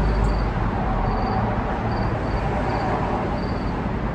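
Steady outdoor background noise with faint, short high-pitched chirps repeating irregularly, about two a second.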